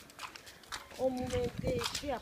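A person's voice: a short, level-pitched call about a second in, followed by a briefer one.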